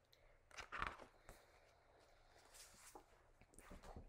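Faint rustling of paper as a picture book's pages and envelope are handled, in short brief bursts over near silence.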